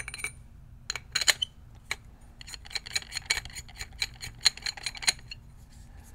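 Light metallic clicks and ticks as a barrel is screwed into a paintball marker. A few separate clicks come first, then a quick run of ticks about six a second through the middle.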